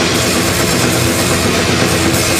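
Heavy metal band playing live at full volume, the drum kit to the fore: fast, closely spaced kick drum strokes under cymbals and drums, with sustained pitched instrument tones beneath.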